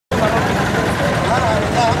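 Several people's voices talking over a steady background of outdoor street noise.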